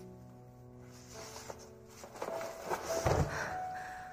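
Soft piano film music with held notes, over a rustling that builds for a couple of seconds and ends in a low thud about three seconds in.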